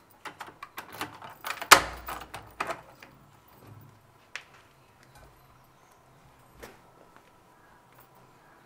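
Knocks and clicks at a wooden door as it is opened: a quick, uneven run of sharp knocks and clicks, loudest about two seconds in, then two or three lone clicks.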